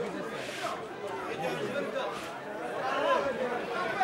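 Crowd chatter: many people talking at once, their voices overlapping.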